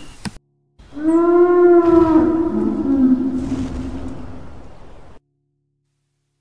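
A Brachiosaurus call sound effect: one long, low call that starts about a second in, drops slightly in pitch midway, then fades and cuts off abruptly about five seconds in.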